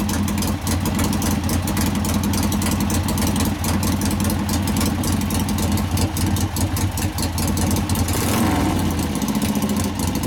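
Rebuilt 883 cc air-cooled V-twin of a 1961 Harley-Davidson XLCH Ironhead Sportster idling with a steady, even exhaust beat. Its sound changes briefly about eight seconds in.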